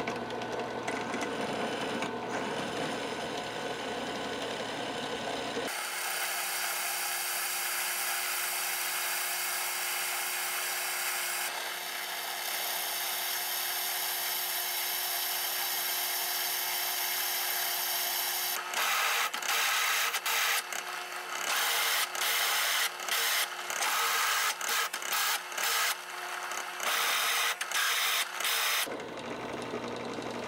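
Drill press running with its twist bit cutting through 5160 leaf-spring steel. In the last third the cutting comes in short, repeated bursts, stopping and starting every half second or so.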